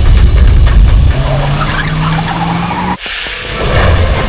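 Film sound-design effects: a loud low rumble for about a second, then a steady, slowly rising low drone that cuts off suddenly about three seconds in, followed by a bright hissing whoosh.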